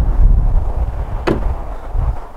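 Corvette rear glass hatch shutting: one sharp thump about a second in, over steady wind rumble on the microphone.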